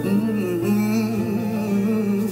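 Gospel choir recording: voices singing a long, wavering melodic line over a steady instrumental backing.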